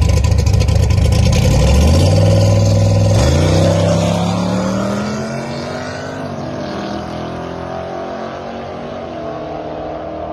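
Fox-body Mustang's 351 Windsor V8 with a Trick Flow stage 3 cam and Flowmaster exhaust, held at steady revs on the line and then launching hard. The pitch climbs, drops at a gear change about three seconds in, climbs again, and the sound fades as the car pulls away down the strip.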